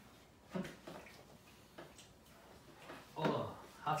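Quiet dinner-table sounds: a few light clicks of cutlery and dishes between brief bits of voices, with a word spoken just before the end.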